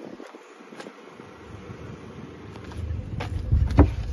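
Wind buffeting the microphone, growing into a low rumble in the second half, with a few sharp knocks and clicks near the end as the cargo-area floor board of a 2016 Kia Sportage is lifted to open the under-floor storage tray.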